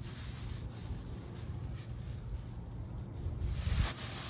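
Thin plastic grocery bags rustling and crinkling as they are twisted together into a cord, over a low background rumble.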